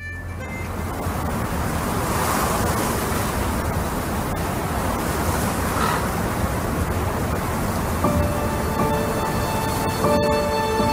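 A steady, even rushing noise right after the music cuts off. Sustained musical tones come in about eight seconds in.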